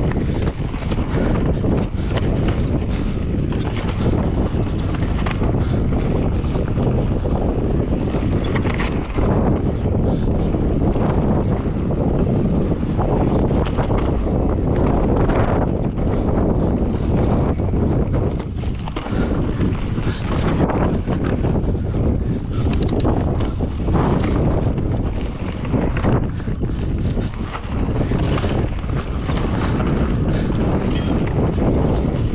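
Wind buffeting the microphone of a full-suspension Berria Mako mountain bike's rider during a fast descent of rocky singletrack, with the bike rattling and knocking over stones at many irregular moments.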